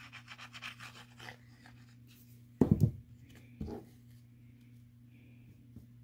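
Tip of a liquid glue bottle scratching and rubbing across embossed cardstock as a line of glue is drawn, a quick run of small scrapes in the first second or so. About two and a half seconds in comes a louder thump, and a softer one a second later.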